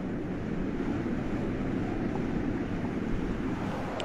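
Steady low rumble of room noise with a faint hiss and no voice.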